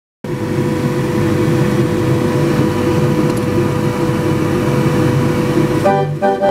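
31-keyless McCarthy fairground organ running before its tune starts: a steady mechanical rumble with a thin held tone, while the cardboard music book feeds into the keyless frame. It starts abruptly just after the beginning.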